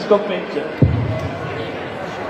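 A single dull thump about a second in, with a deep booming tail, over a murmur of voices in a large hall.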